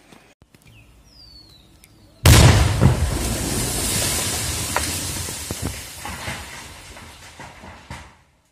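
Controlled detonation of a sandbagged live shell: a single sudden loud blast about two seconds in, its rumble dying away slowly over the following five seconds.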